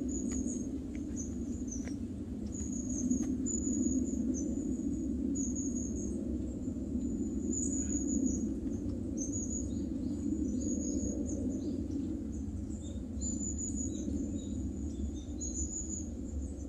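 Woodland birdsong: a high, short call repeated about once a second, with softer notes from other birds later, over a steady rush of wind.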